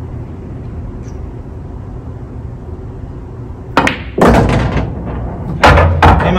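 Pool shot: the cue tip clicks against the cue ball about four seconds in, the cue ball clacks into the object ball a moment later, and near the end a heavier thud comes as the object ball drops into a pocket.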